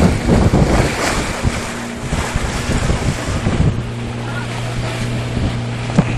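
Wind buffeting the phone's microphone over water rushing past a moving boat, with the boat's engine running steadily underneath. The engine's low hum stands out more clearly in the second half, once the wind noise eases.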